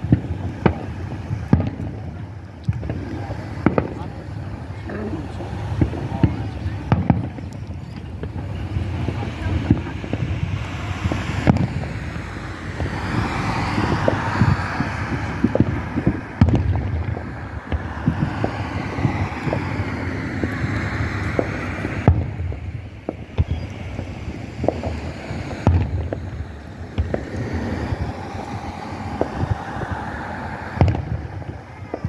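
Aerial firework shells bursting overhead: a run of irregular booms and bangs, one every second or two, with a stretch of denser rushing noise in the middle.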